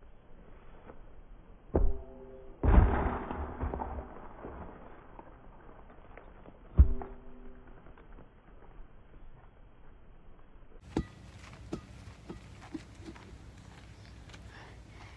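Inflatable rubber ball being kicked and hitting a tree: three dull thuds, two with a short hollow ring and one followed by about a second of rustling noise. Faint clicks near the end.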